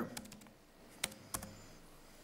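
A few light keystrokes on a laptop keyboard, the two sharpest about a second in.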